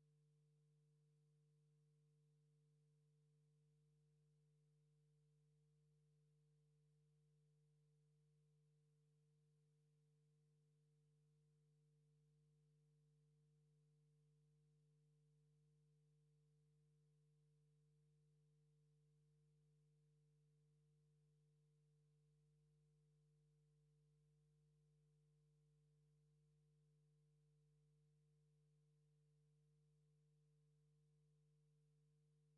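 Near silence: only a faint, steady low hum.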